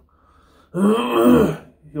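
A man's throaty, voiced non-speech sound lasting about a second, starting about a second in after a brief lull.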